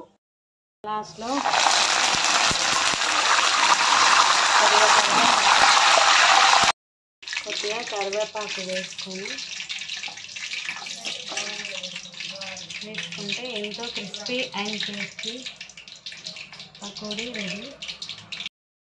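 Loud, even sizzling of food frying in hot oil. It starts about a second in and cuts off suddenly just before seven seconds. After the cut a quieter hiss goes on, with faint voices under it.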